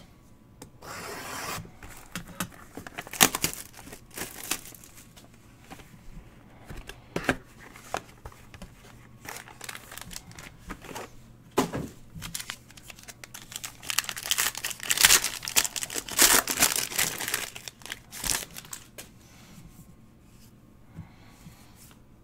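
A sealed trading card box being torn open and its cards handled: tearing and crinkling of the wrapper with rustling card stock and scattered sharp clicks, the busiest stretch about two-thirds of the way through.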